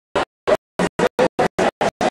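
Live band music chopped into short fragments, about eight in two seconds and irregularly spaced, with dead silence between them: the recording is stuttering in and out.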